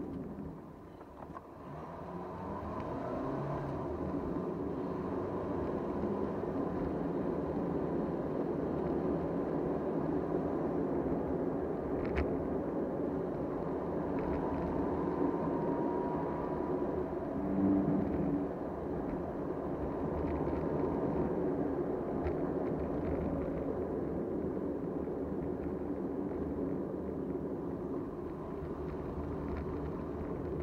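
Car driving along a town road, heard from inside the cabin: steady engine and tyre noise, dipping briefly just after the start. A short two-note tone sounds about two-thirds of the way through.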